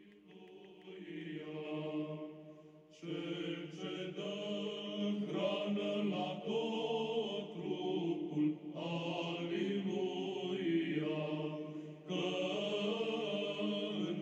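Slow religious chant: voices holding long sung notes in phrases. It fades in over the first couple of seconds, with short breaks about three, nine and twelve seconds in.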